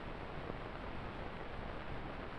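Steady hiss of an old film soundtrack, with no other sound.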